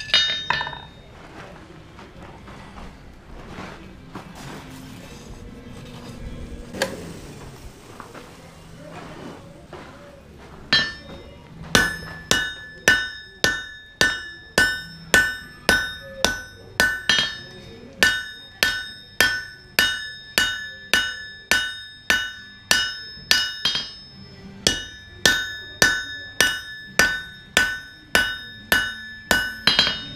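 Blacksmith's hand hammer striking a red-hot high-carbon steel knife blank on an anvil, drawing out the steel, each blow ringing off the anvil. A couple of blows come at the start, then a quieter stretch of about ten seconds. After that the hammering runs steadily at about two blows a second, with a short pause about two-thirds of the way through.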